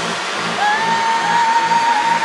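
Trance dance music from a DJ mix, with a steady low pulse about four times a second. About half a second in, a synth note slides up and then holds.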